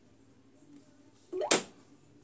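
Quiet room, then about one and a half seconds in a brief rising swish ending in one sharp click: a hand rubbing and knocking on the phone that is recording, close to its microphone.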